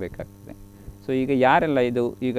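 Steady electrical mains hum through a brief pause in the talk, then a voice speaking from about a second in.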